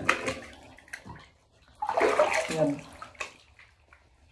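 Water splashing and sloshing in a bathtub as a person washes, in irregular bursts: a splash at the start, a small one about a second in, and a louder, longer splash around the middle.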